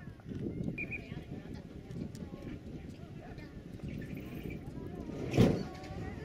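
Open-air football ground sound: distant shouts and calls from players and onlookers over a steady low rumble of wind on the microphone, with one sharp thump a little before the end.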